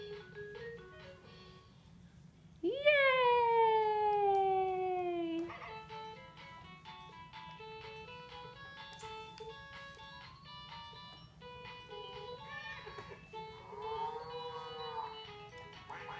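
Electronic tune from a toddler's push-along baby walker toy, a run of short beeping notes. About three seconds in, a long, loud falling cry lasts nearly three seconds, and a shorter voice-like call comes near the end.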